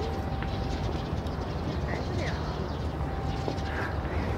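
Steady low background noise of an outdoor scene, with a couple of faint brief chirps about two seconds in.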